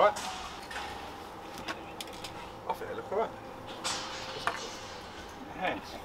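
Paper stencil being peeled off the steel side of a skip: scattered faint crackles and clicks, with a brief hiss about four seconds in.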